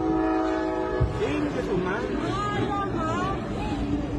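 A train horn sounding a steady multi-note chord that stops about a second in, over the rumble of the passing train. Excited voices follow.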